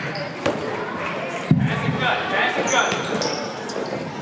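Basketball being dribbled on an indoor gym court, its bounces thudding irregularly, the loudest about one and a half seconds in, with the echo of a large hall.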